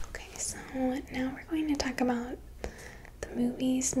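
Speech only: a woman speaking in a soft, low voice.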